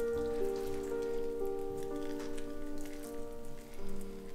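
Faint wet crackling and squishing as a spoon is worked under raw chicken skin to loosen it from the breast, over soft background music of sustained notes.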